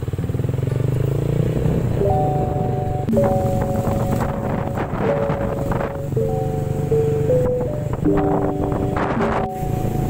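Motorcycle engine running steadily under way, with background music of held chords coming in about two seconds in and changing chord about once a second.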